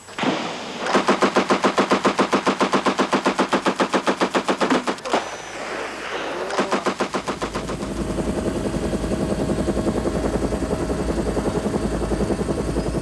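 Helicopter rotor beating in a fast, even rhythm of about six or seven pulses a second, loud for about four seconds. It eases, then returns steadily with a deep rumble underneath from a little past halfway.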